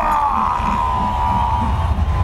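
Dramatic cartoon soundtrack: one long held high note, sinking very slightly in pitch, over a steady deep rumble, as a shot heads for goal.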